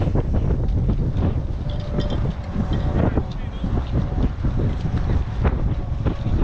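Strong wind buffeting the camera microphone: a loud, continuous, uneven low rumble.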